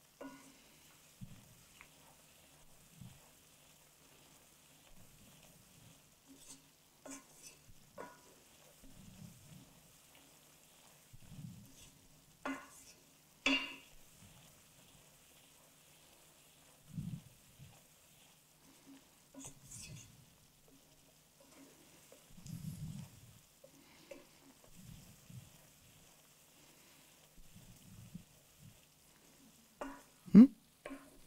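A wooden spoon stirring almonds in boiling sugar water in a pan: a faint sizzle, with occasional sharper scrapes and knocks of the spoon against the pan, the loudest about halfway through.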